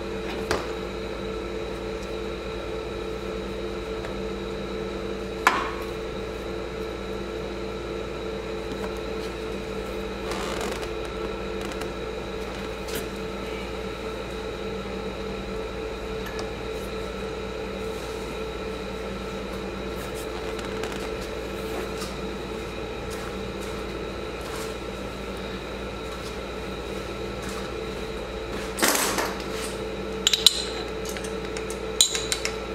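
A steady hum runs throughout, broken by a few sharp metal clinks of hand tools on the small ATV engine's starter parts, with a quick cluster of clinks near the end.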